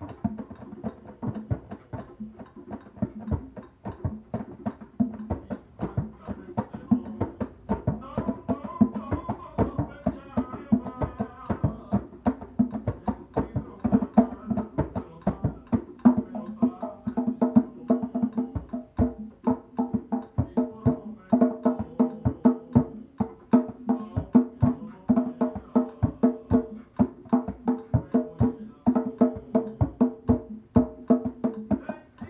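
A pair of djembes played with bare hands in a quick, steady rhythm of sharp strokes.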